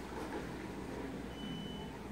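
Quiet room background with a low steady hum, and a faint thin high-pitched tone lasting about half a second midway.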